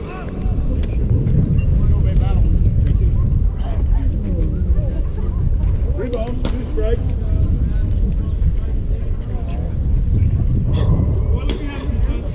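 Background voices of people talking over a steady low rumble, with a few faint clicks.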